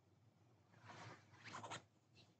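Faint rustling and scraping from a person shifting and moving their hands, a few quick scrapes in the second half.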